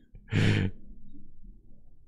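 A person's short, breathy exhale, like a sigh at the tail of a laugh, about half a second in and lasting under half a second.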